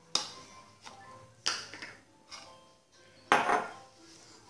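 Metal spoons clinking and scraping against a bowl while stirring damp coffee grounds: about five separate strokes, the loudest a little after three seconds in. Faint background music runs underneath.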